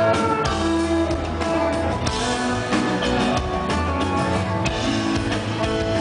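Live rock band playing: electric guitar lines over held bass notes and a drum kit.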